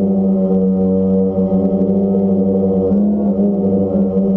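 DJI Phantom quadcopter's four motors and propellers humming steadily, recorded from the GoPro on board. The pitch bends briefly about three seconds in as the motors change speed while the drone turns.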